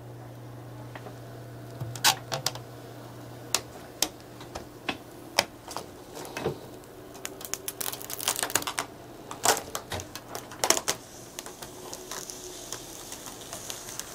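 Protective plastic film being peeled off a tempered-glass PC case side panel, with irregular crackles and clicks as it comes away. A soft hiss joins in over the last couple of seconds.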